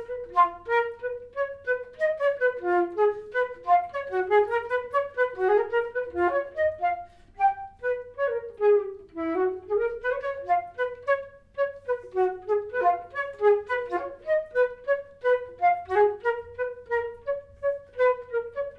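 Solo concert flute playing rapid runs of short, detached notes that sweep up and down in wave-like patterns, with a brief break about seven seconds in.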